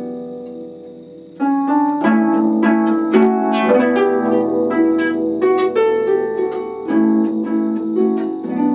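Concert harp being played: a chord rings and fades over the first second and a half, then louder plucked notes and chords follow in quick succession.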